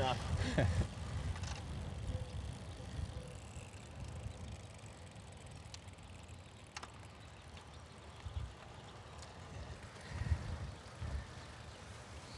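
Bicycle riding: low rumble of wind on the microphone and tyres rolling on the bike path, swelling briefly about ten seconds in, with a couple of faint ticks near the middle.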